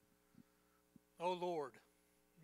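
Steady low electrical hum in a quiet room with a couple of faint ticks, then a voice speaks a short word or two just over a second in.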